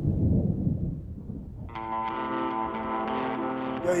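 A low rumble of thunder for the first second and a half, followed by a held musical chord that sounds steadily from about two seconds in.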